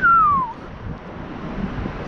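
A short whistled note that rises quickly and then slides down, lasting about half a second, followed by steady street and wind noise on the microphone.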